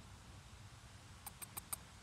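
Eastern chipmunk cracking sunflower seed shells with its teeth: four quick, sharp clicks about six a second, a little past halfway through, against faint background hiss.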